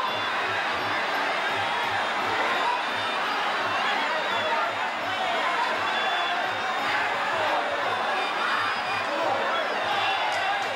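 Traditional Muay Thai ring music (sarama) keeps a steady drum beat of about two to three strokes a second, layered with a busy crowd's chatter and shouts.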